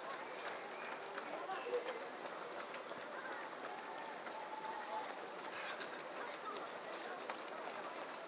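Continuous shuffle of footsteps from a large field of runners passing on a wet tarmac road, with a steady murmur of voices from runners and onlookers mixed in.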